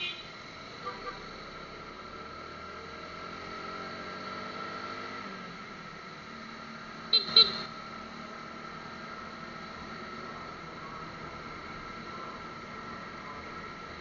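Motorcycle ride in city traffic through a cheap helmet camera's microphone: the engine note climbs in pitch as the bike accelerates for about five seconds, then holds steady under constant high tones. About seven seconds in comes a short double beep, the loudest sound.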